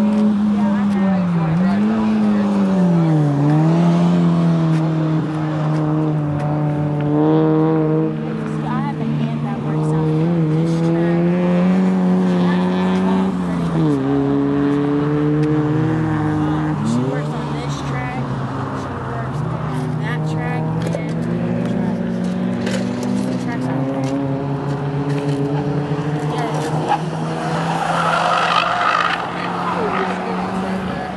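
Engines of cars lapping a race track, their revs rising and dipping through shifts and corners. Near the end a car comes past closer.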